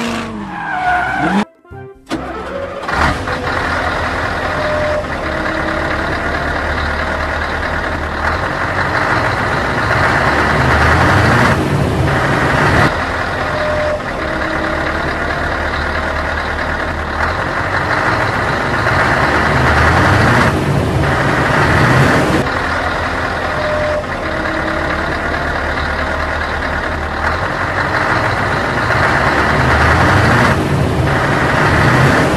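A dubbed-in vehicle engine sound effect. A short engine note falls in pitch and breaks off about a second and a half in. After a brief gap, a steady engine running sound starts and repeats the same pattern about every ten seconds, like a loop.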